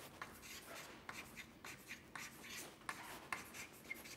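Chalk writing on a blackboard: a faint, irregular run of short scratches and taps as letters are formed.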